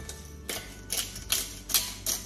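Hand-twisted pepper mill grinding peppercorns in a series of short crunching strokes, about two or three a second, starting about half a second in.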